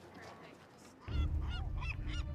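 Birds calling in a quick run of short rise-and-fall cries, starting about a second in, over a low steady rumble.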